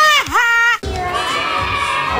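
A short, loud, high-pitched vocal cry that slides up, dips and rises again, then cuts off abruptly under a second in. It is followed by the steady chatter of a busy restaurant crowd.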